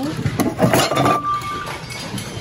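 Ceramic dishes, mugs and glassware clinking and knocking together as a hand rummages through them in a bin. There is a cluster of clatters in the first second, then a short clear ringing note.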